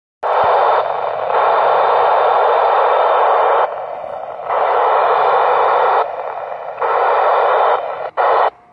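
Loud, steady hiss of radio receiver static from the Icom ID-4100A transceiver's speaker, tuned to the satellite downlink. The hiss dips quieter three times, about a second in, midway and near the end.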